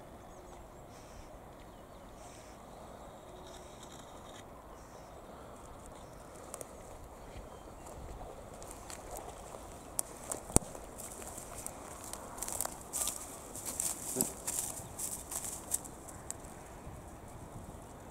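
A faint, steady outdoor hiss of water and air at first. From about eight seconds on comes a run of sharp crackles and snaps of dry reed and brush litter, the sound of paws and feet moving over the riverbank as the dog climbs out of the water, with one louder snap about ten seconds in.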